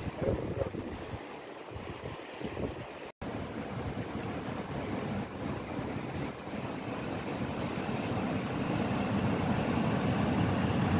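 Sediment-laden river water, flushed from a dam, rushing and churning in standing waves, with wind buffeting the microphone. The sound drops out for an instant about three seconds in, and the rush grows louder toward the end.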